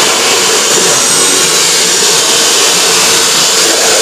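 Handheld angle grinder running steadily against steel, its disc grinding the metal with a continuous high whine and rush.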